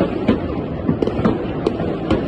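Many distant fireworks going off at once across a city, blending into a continuous rumble of bangs with sharper cracks and pops several times a second.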